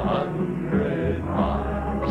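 Male folk vocal group singing a song in harmony, accompanied by strummed acoustic guitars.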